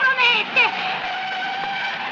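Volkswagen Beetle driving off, a steady vehicle noise. Brief shouts are heard in the first half second or so.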